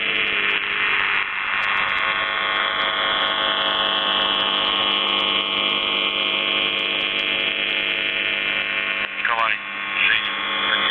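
Shortwave receiver audio of The Buzzer (UVB-76) on 4625 kHz: a steady, harsh buzzing tone with a hum under it. Gliding whistles from interference cross it, a slow falling one in the middle and a quick flurry of sweeping chirps about nine seconds in.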